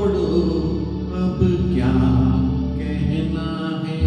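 A man singing a slow Hindi film song into a handheld microphone over a recorded backing track, holding long notes.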